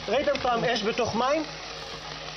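Voices, apparently exclamations, over the steady hiss of a lit cake-fountain sparkler throwing sparks.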